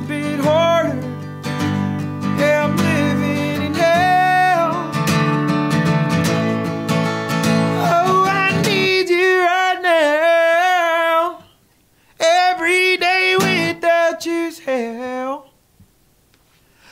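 A steadily strummed acoustic guitar under a man's singing with no words picked out. About nine seconds in, the guitar stops and the voice carries on alone, with two brief breaks, the second near the end.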